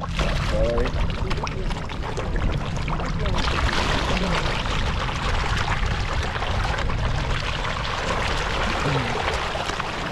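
A crowd of carp and tilapia splashing and churning at the water's surface as they feed on thrown pellets: a continuous crackling, sloshing hiss full of small splashes, growing louder about three seconds in.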